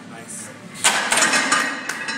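A plate-loaded barbell clanks suddenly into the bench-press rack about a second in, followed by rough, loud shouting.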